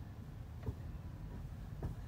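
Low steady room rumble with two soft thumps about a second apart.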